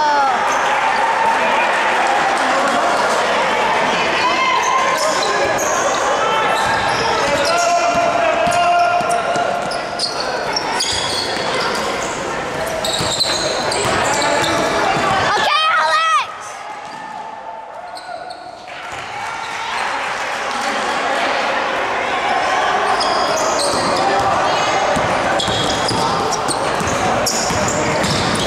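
Basketball game in a gym: the ball bouncing on the hardwood court amid shouting and chatter from players and spectators, echoing in the hall. The sound turns quieter for a few seconds just past the middle.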